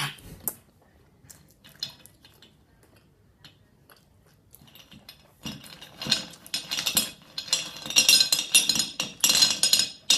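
Hard Cry Baby sour gumballs clicking and rattling against one another as hands rummage through a pile of them. A few scattered clicks at first, then a busy clatter from about five and a half seconds in.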